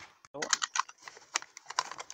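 Irregular light plastic clicks and taps, several a second, from fingers working at the Blume toy's plastic flower-pot package and tugging at its inner plastic layer.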